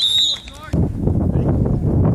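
Referee's whistle giving one short, steady, high blast of under a second, which in flag football marks the play dead. It is followed by a loud, steady rumbling noise.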